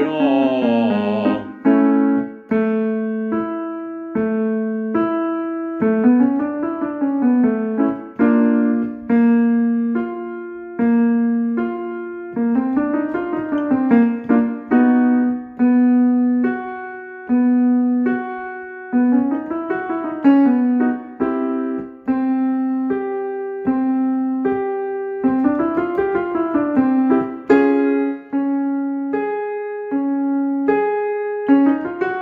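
Keyboard with a piano sound playing the accompaniment for a vocal slur exercise: a repeating pattern of chords and notes, about six seconds long, that starts a little higher each time. Each repetition carries a short glide up and back down.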